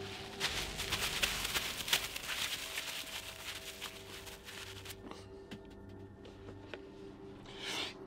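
Plastic cling film rustling and crackling as it is pulled off a cardboard box and crumpled in the hands, dense for the first five seconds or so, then only a few faint rustles and clicks.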